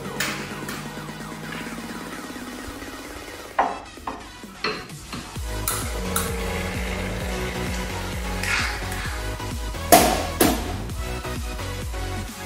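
Electronic background music builds with a rising sweep, then settles into a steady beat about halfway through. Over it come a few sharp clinks of a metal spoon stirring espresso in a small glass shot glass, the loudest near the end.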